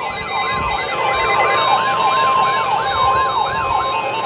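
Weather radio receivers sounding a severe thunderstorm warning alert: the steady NOAA Weather Radio warning tone near 1 kHz, overlaid by an electronic siren alert that sweeps up and down about three times a second. A few low thumps from the phone being carried are mixed in.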